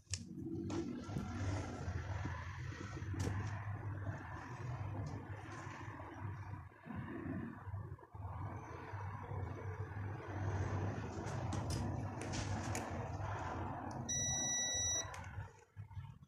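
Steady fan- or air-like noise with a low hum from electronics bench equipment, with a few light clicks, and a single electronic beep lasting about a second near the end, just before the noise stops.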